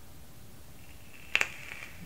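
A single sharp click of a mechanical box mod's fire button being pressed about a second and a half in, followed by a faint high hiss as the rebuildable dripping atomizer's coil fires.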